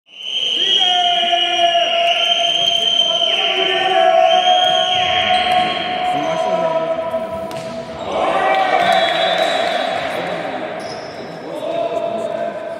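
Volleyball rally in a large sports hall: a few sharp ball strikes among voices, over long held tones that echo through the hall.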